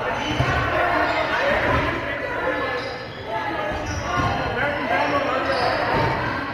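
Rubber dodgeballs bouncing and thudding on a wooden gym floor, echoing in a large hall, with players' voices throughout.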